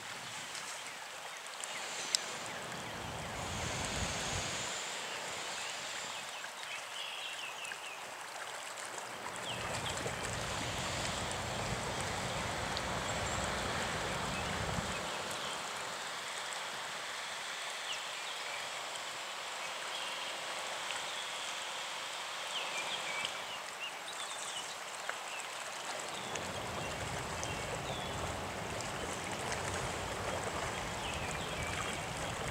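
Shallow floodwater flowing and lapping over flooded grass, with small splashes from spawning river carp thrashing at the surface.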